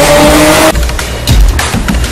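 Sports car engine revving with tyres squealing, loud. A rising whine cuts off under a second in, and a rougher, pulsing engine sound follows.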